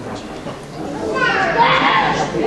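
Indistinct chatter of voices in a large hall, with a burst of high, overlapping voices calling out from about a second in.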